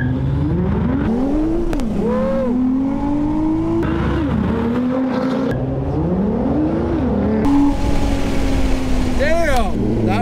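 Sports car engine accelerating hard from a standing start in a drag race, pulling up through the gears: the pitch climbs, falls back at each upshift, and climbs again several times.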